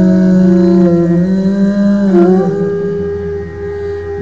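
A man singing long held notes into a microphone over sustained musical accompaniment; the pitch shifts about two seconds in and the sound eases a little near the end.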